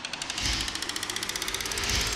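Logo-sting sound design: deep booming hits, one about half a second in and another near the end, under a fast, even ticking of about a dozen clicks a second.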